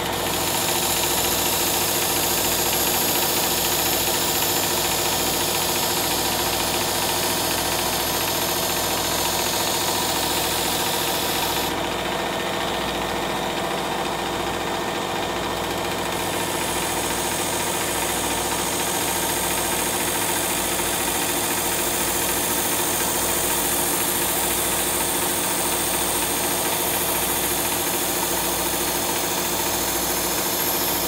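Work Sharp Ken Onion Elite electric belt knife sharpener running steadily with a cloth honing belt loaded with green honing compound, as a chef's knife is drawn through its edge guide.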